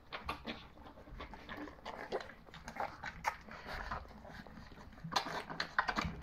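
A litter of nearly three-week-old puppies lapping and slurping wet puppy gruel from a shallow steel feeding dish: a busy, irregular patter of small wet smacks and clicks.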